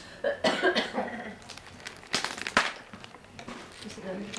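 A person coughing in a few noisy bursts, the loudest about two seconds in, with short crackles in between.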